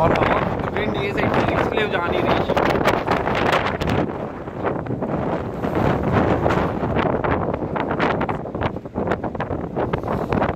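Strong wind buffeting the microphone on an open ship's deck in rough weather, a loud, gusty rush that never lets up.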